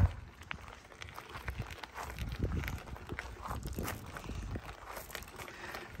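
Irregular crunching of gravel under slow footsteps and the tyres of a Jazzy power wheelchair rolling across a gravel driveway.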